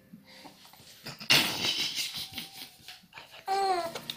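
A small child's breathy laughter and babbling, ending with a short high-pitched vocal sound.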